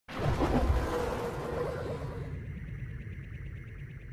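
Intro music sting for a logo reveal: it starts suddenly with a loud, deep hit, then fades gradually, the high end dropping away after about two seconds.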